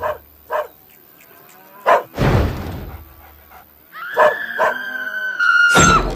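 Animal-like yelps, then a loud hit that fades away, then a long high whine that ends in another loud hit.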